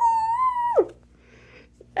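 A woman's excited high-pitched "woo!" whoop, held for most of a second and then falling away sharply in pitch.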